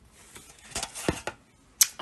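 Handling noise at a table: rustling with several clicks as a paper plate mask and plastic are picked up and moved about, then a lull and one sharp click just before the end.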